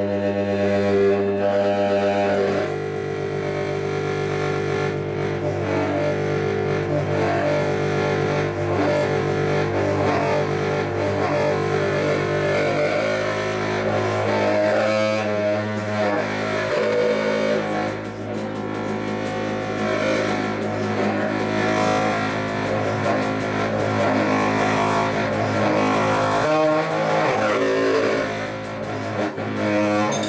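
Large low-pitched saxophone played solo: long held drone notes with many buzzing overtones stacked above them, moving to a new pitch about two and a half, thirteen and twenty-six seconds in.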